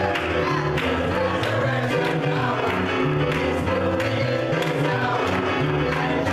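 Small gospel choir singing an up-tempo number to electric keyboard accompaniment with a moving bass line, hands clapping in time.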